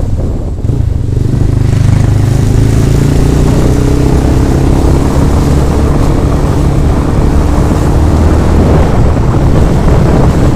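Motorcycle engine running steadily at road speed, its note holding even, under heavy wind rumble on a helmet-mounted camera's microphone.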